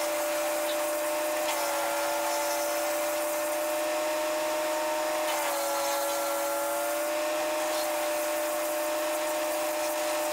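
Tow-behind wood chipper's engine running steadily with a constant hum, its pitch dipping slightly about one and a half and five and a half seconds in.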